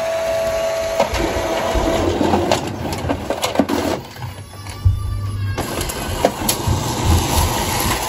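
Epson ET-16600 inkjet printer running its paper guide cleaning cycle: motors whirring and clicking as a blank sheet is pulled through and fed out. A steady whine stops about a second in.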